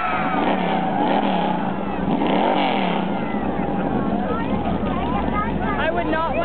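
Race car engines running on the track, with one engine rising and then falling in pitch about two seconds in, under crowd chatter.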